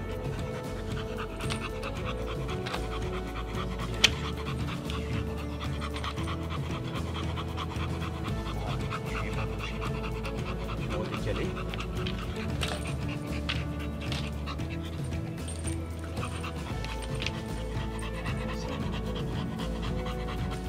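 An American bulldog panting while being stroked, over steady background music, with a single sharp click about four seconds in.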